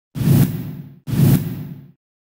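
A whoosh sound effect with a deep boom under it, played twice: each hits suddenly and fades away over most of a second. It is the sound of a TV news channel's logo intro.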